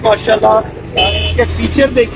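Mostly a person talking over a steady low hum. About a second in, a short steady high tone sounds for under half a second.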